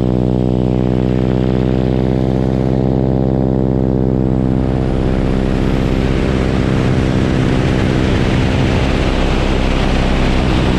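Boeing Stearman biplane's radial engine and propeller running at a steady drone with many even overtones, heard from a camera mounted on the wing. From about halfway a rushing wind noise grows over it and the engine tone blurs.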